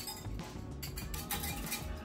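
Wire whisk clinking rapidly and repeatedly against a glass measuring cup while whisking a liquid, over background music.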